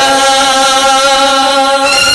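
Male singers holding one long, steady sung note, amplified through a PA system.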